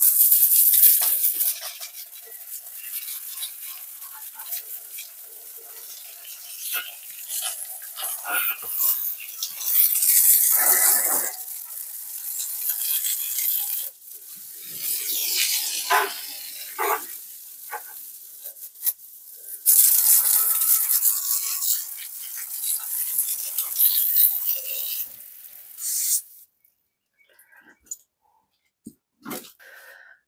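Water spraying from a garden hose over a tractor's engine and radiator, rinsing off spilled coolant: a hiss that swells and fades in surges and stops about 26 seconds in.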